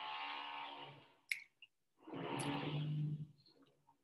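A person's voice making two long, drawn-out sounds, each held for over a second, with a sharp click between them.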